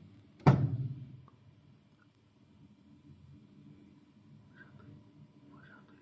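A single heavy thunk from the flat knitting machine's needle-bed area about half a second in, ringing out briefly, followed by a faint low steady hum with a couple of faint small clicks.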